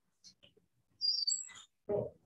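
A bird chirping: a quick run of high, gliding chirps about halfway through, followed near the end by a short, lower sound.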